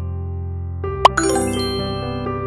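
Soft background music with steady sustained notes; about a second in, a sharp click sound effect followed by a bright chiming ding.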